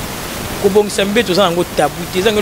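A person talking over a steady background hiss. The voice starts about half a second in.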